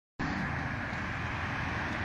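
Steady outdoor street noise with a low, engine-like drone of vehicles. It starts abruptly a moment in and holds level throughout.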